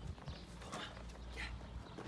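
Faint footsteps and shuffling on dirt over a low steady rumble, with a man's voice calling the dog once, about halfway through.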